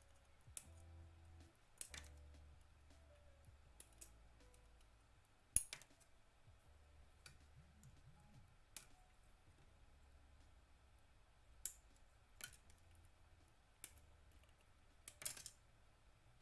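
Scattered sharp plastic clicks and taps, about a dozen at uneven intervals, the loudest about five and a half seconds in, from a plastic model-kit runner being handled and its parts worked on a table.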